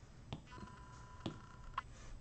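A few faint taps of an Apple Pencil on the iPad's glass screen. Under them, a faint steady two-pitch electronic tone starts about half a second in and stops near the end.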